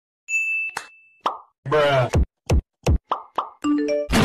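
Cartoon sound effects: a ding held for about a second, then a string of quick falling bloops with a short voice-like sound among them, and a quick run of stepped beeps near the end.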